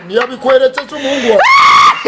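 A man's voice talking animatedly, then breaking into a loud, high-pitched yell held steady for about half a second near the end.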